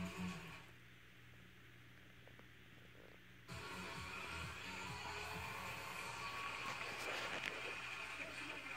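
Music from a television show playing in the room. It fades about half a second in, leaving a quieter stretch, then comes back suddenly louder and fuller about three and a half seconds in.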